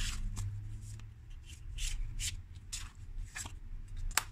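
Tarot cards being handled and one drawn from the deck: a series of short papery rustles and flicks.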